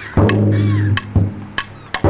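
Large chrome-shelled drum with a Remo head, played with a felt mallet and a stick. There are about four deep strokes; the first one rings on for most of a second.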